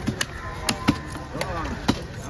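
Heavy fish-cutting knife striking into a large red snapper on a wooden chopping block: several sharp chops at irregular spacing, the loudest about a second in and just before the end.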